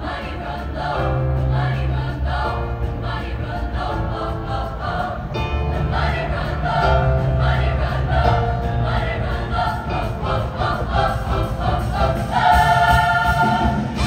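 All-female show choir singing with instrumental accompaniment, the voices moving through chords over a bass line and building to a loud held chord near the end.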